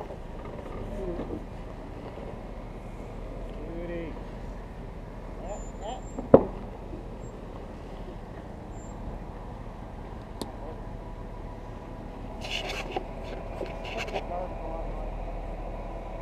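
Four-door Jeep Wrangler's engine running low and steady as it crawls through a tight turn on a rough trail, with a single sharp knock about six seconds in and a cluster of short scratchy noises near the end.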